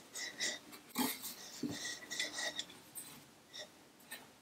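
Small tray-top side table being pushed back by hand, with light scrapes, taps and handling sounds and a sharper knock about a second in.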